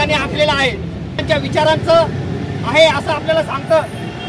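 Speech in short bursts over a steady low background rumble.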